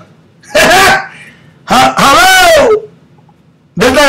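A man's voice in two short, loud, shouted vocal bursts with rising and falling pitch, the second longer, distorted by an overloaded microphone.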